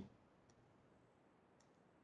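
Near silence: quiet room tone with two faint, short clicks, about half a second in and again about a second later.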